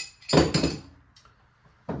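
Metal adjustable spanner set down on the table with a loud clink, once, about half a second in, ringing briefly.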